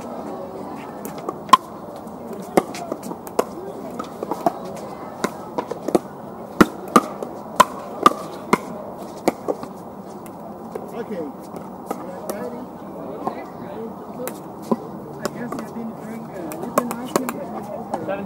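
Pickleball paddles striking a hard plastic ball: sharp, irregular pops, with a quick run of loud hits in the middle and fainter ones scattered throughout.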